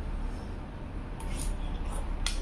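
Eating sounds: a metal spoon clinking and scraping in a bowl a few times, over a steady low hum.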